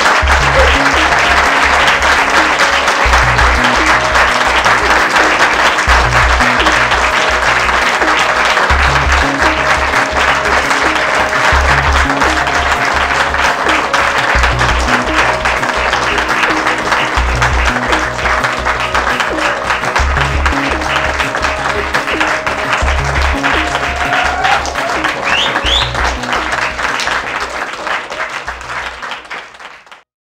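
Audience applauding over music with a steady beat, both fading out near the end.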